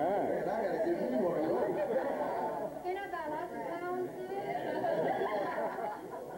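Overlapping chatter of a roomful of people talking at once, no single voice clear.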